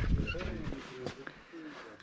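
The end of a man's speech fading out, then faint distant voices and a few light knocks.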